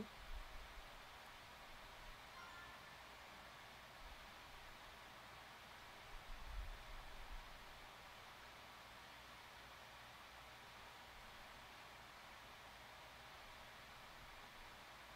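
Near silence: faint room hiss, with soft low bumps just after the start and again around six to seven seconds in as fabric labels are handled on a cutting mat.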